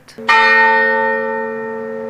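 A church bell struck once, its note ringing on and slowly dying away.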